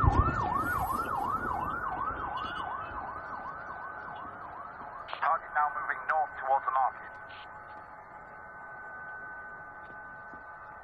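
Police siren on a fast yelp, rising and falling about three times a second and fading away over the first few seconds. A few short, louder siren chirps follow, after which a steady high tone remains.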